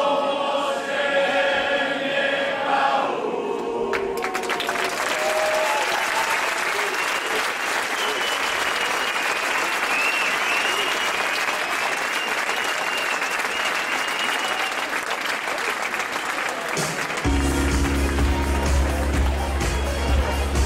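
A group of voices singing together ends about three seconds in, followed by sustained applause from a crowd, with some whistles and cheers. About three seconds before the end, dance music with a heavy bass beat starts up.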